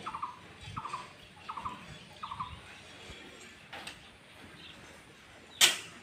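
A bird calling a short, falling note over and over, about once every 0.7 s, stopping about two and a half seconds in. Near the end a sudden, brief, loud rushing burst.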